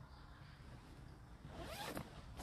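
A zipper pulled in one quick stroke near the end.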